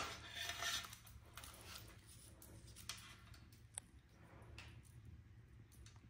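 Faint rustling and light clicks of an e-bike controller and its wiring being handled as it is pulled out of the frame, with one short sharp click about two-thirds of the way through.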